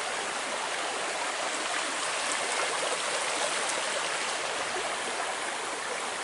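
Steady rushing of a small creek's flowing water.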